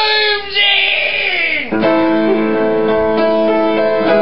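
A man singing to his own piano accompaniment: a sung line that slides down in pitch and ends a little under two seconds in, then a sustained piano chord ringing on.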